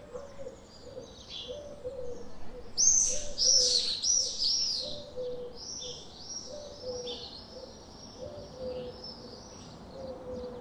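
Small birds chirping and twittering, loudest in a run of four or five arched chirps about three seconds in. Beneath them a pigeon coos low, about once a second.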